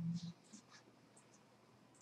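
A voice trails off in the first moment, then faint, scattered light ticks and scratches in a quiet small room.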